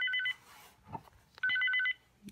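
Motorola XPR 7550 two-way radio sounding its incoming text-message alert: a burst of rapid high beeps, repeated about a second and a half later.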